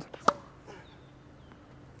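A tennis ball struck once by a racket on a one-handed topspin backhand: a single sharp pop about a third of a second in, with a fainter tick just before it.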